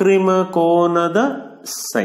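A man's lecturing voice drawing a word out in a long, level, sing-song tone, then a short hissing 's' sound near the end.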